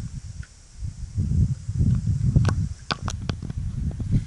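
Uneven low rumble of wind and handling on the camera's microphone, with a few sharp clicks in the second half.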